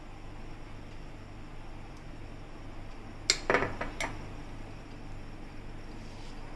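A few quick clinks of a spoon and glass bowls being handled and set down, bunched together about three and a half seconds in, over a faint steady hum.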